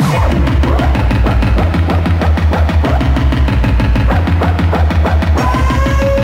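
Electronic vaporwave music with a fast, regular pulsing bass beat. A sustained synth chord enters about five and a half seconds in.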